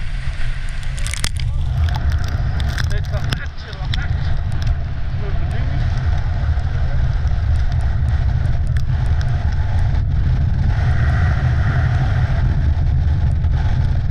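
Wind buffeting the microphone of a camera on a wooden horn sled racing downhill and gathering speed, with the runners hissing over the snow. Sharp knocks and rattles of the sled come in the first few seconds.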